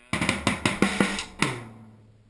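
A quick drum fill on an acoustic drum kit: about ten rapid strikes in a second and a half, then the drums ring out, with a low drum tone left ringing to the end.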